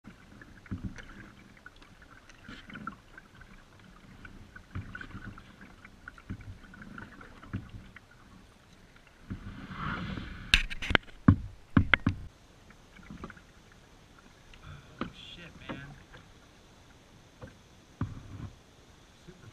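Kayak paddle dipping into calm lake water in slow, regular strokes, with soft splashes and drips. About ten seconds in there is a louder stretch with a handful of sharp knocks.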